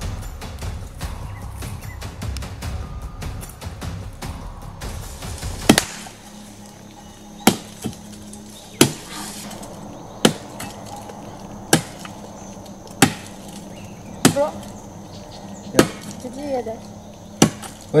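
Dramatic film sound effects: a low rumble for about six seconds, then a sharp crack, followed by a steady low hum with sharp cracks at an even beat about every second and a half, which a character takes for thunder.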